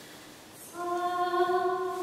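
A woman's solo voice sings a long, steady held note that begins about three-quarters of a second in, after a short lull.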